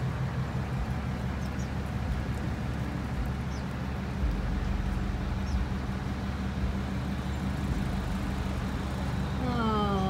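Steady low rumble of idling car engines and parking-lot traffic, with a few faint, brief high chirps from small birds. A woman's voice starts just before the end.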